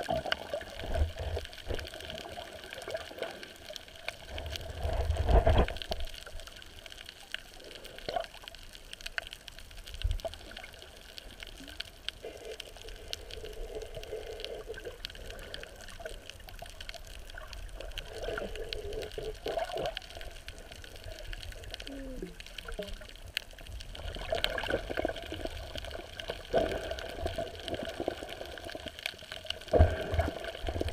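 Water sloshing and rushing around a submerged camera, muffled as heard underwater, with uneven swells and a louder surge about five seconds in.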